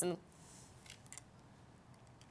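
The last syllable of a woman's speech, then a quiet pause of faint hiss with a few soft clicks about a second in.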